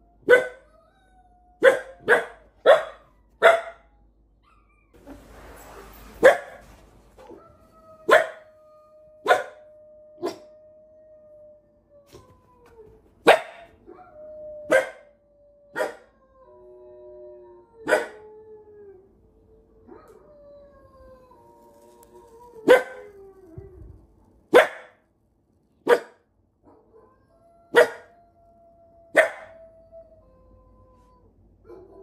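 A Samoyed puppy barking repeatedly at the TV, sharp single barks a second or two apart, about eighteen in all. Over the barks come long, slowly falling howls from a dog-howling video playing on the TV. The puppy barks rather than howls along.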